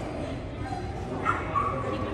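A dog yips twice in quick succession a little over a second in, over the background of voices in a large echoing hall.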